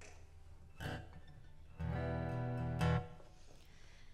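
Steel-string acoustic guitar strummed briefly: a short stroke about a second in, then a chord ringing for about a second, cut off by a sharper stroke near three seconds.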